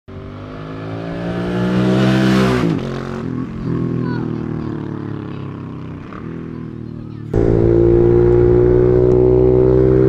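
Motorcycle engine revving, its pitch rising over the first two and a half seconds before dropping back and running on. About seven seconds in, the sound cuts suddenly to a louder, steady engine note of the bike running on the road.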